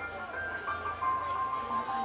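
Live rock band music heard from the crowd through a camera microphone: a quiet passage of sustained melodic notes that step from one pitch to the next.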